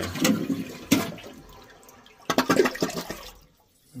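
Glacier Bay McClure one-piece dual-flush toilet flushing. Sharp clicks near the start are followed by a rush of water that fades over a couple of seconds, then a second, shorter burst of sound just past two seconds.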